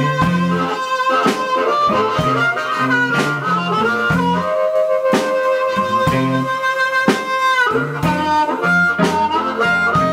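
Blues harmonica solo, played cupped around a handheld microphone, with long held notes over electric guitar and a drum kit.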